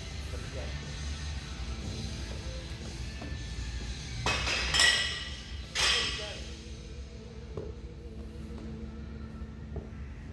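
Gym background music with voices, and two loud metallic clanks with ringing, about four and six seconds in.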